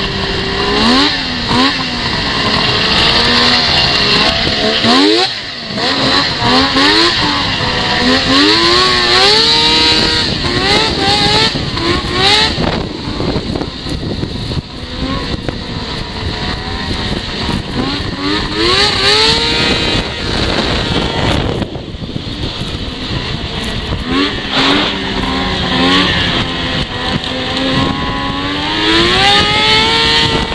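Yamaha 700 triple snowmobile's three-cylinder two-stroke engine under way, its pitch climbing and falling again and again as the throttle is opened and eased off, with a short drop around five seconds in.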